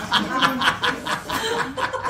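A man laughing: a run of short, breathy chuckles repeating about five times a second.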